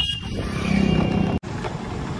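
Motor scooter riding along a street: a steady engine and road noise. The sound cuts out for an instant about halfway through.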